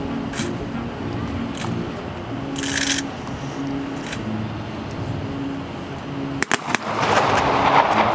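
Military band music with low held notes, with a sharp clatter of rifles about six and a half seconds in as a rank of guardsmen drops to a kneeling firing position, followed by a second of louder rushing noise.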